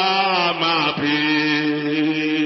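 Wordless worship singing in long held notes that slide to a new pitch about a second in, over a steady low held tone.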